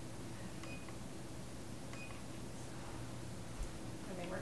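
Low steady room hum, with two brief faint high beeps about a second and a quarter apart.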